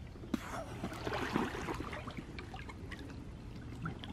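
Pool water sloshing and trickling as a person wades and pushes an inflatable float through it, with small splashes and drips; it swells briefly about a second in.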